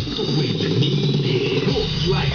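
Music playing through hi-fi loudspeakers in a room, a dense, continuous mix strongest in the low range.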